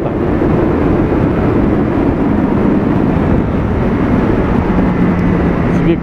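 Triumph Street Triple's three-cylinder engine running at steady highway cruising speed. The engine note holds level under a heavy rush of wind and road noise.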